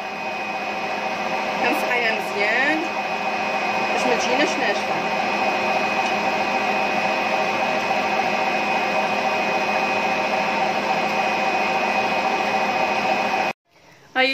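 Electric mixer running steadily with an even whine, whipping vanilla mousse powder with cold milk into a stiff mousse. The sound cuts off suddenly near the end.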